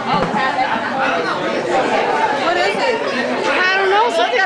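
Many people talking at once in excited, overlapping chatter.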